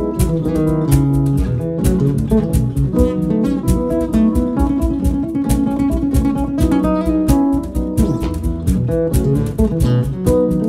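Jazz guitar played on a double-neck guitar: an instrumental passage of plucked chords and bass notes, with frequent sharp percussive attacks.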